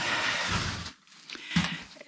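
A person sighing: one breath out lasting about a second, mid-sentence between halting words.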